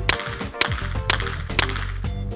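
Background music with about four sharp handgun shots fired in quick succession, roughly half a second apart.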